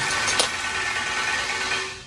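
Loud steady rushing noise with a faint steady whine in it, cutting off suddenly near the end, with one sharp click under a second in.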